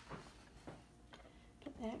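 Faint light clicks and taps, about two a second, as a Big Shot die-cutting machine and its dies are picked up and set down.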